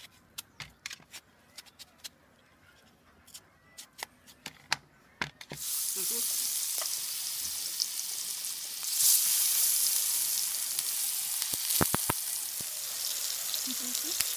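Watermelon deep frying in hot oil: a run of light clicks and taps, then loud sizzling that starts suddenly about six seconds in and surges briefly about three seconds later, with a few sharp clicks near the end.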